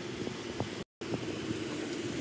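Chevrolet Camaro's engine running as the car rolls slowly across a parking lot, a steady low hum. The sound drops out completely for a split second just under a second in.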